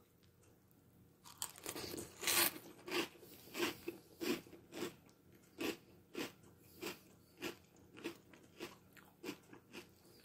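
A mouthful of Boo Berry cereal in milk being chewed, with crisp crunches coming regularly, a little under two a second, starting about a second in.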